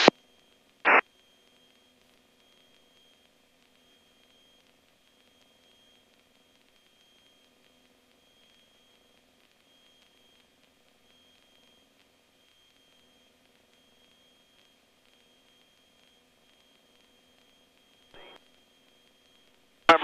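A quiet aircraft radio channel between transmissions, with only a faint steady hum. A short burst of radio noise comes about a second in, and a much fainter one near the end: squelch breaks on the VHF comm radio.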